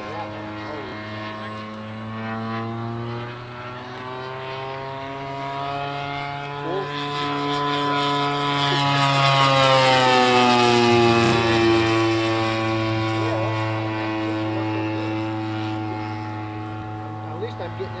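Engine and propeller of a large-scale radio-controlled P-39 Airacobra model, over 100 inches in wingspan, flying past. It drones steadily, grows louder and rises in pitch, is loudest about ten seconds in as it passes close, then drops in pitch and fades as it pulls away.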